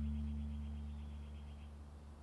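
A single low note plucked pizzicato on an upright double bass, ringing on and fading away slowly.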